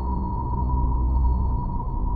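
Eerie ambient drone: a single steady high tone held over a deep, continuous rumble, with no change or beat.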